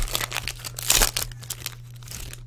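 Trading-card pack wrapper crinkling and tearing as it is opened by hand, with a dense burst of crackle about a second in.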